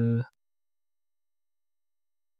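A man's voice holds a drawn-out word that ends in the first moment, followed by total silence.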